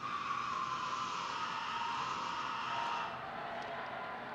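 Film soundtrack played over loudspeakers: a steady rushing noise with a faint tone slowly falling in pitch. It starts suddenly and eases slightly about three seconds in.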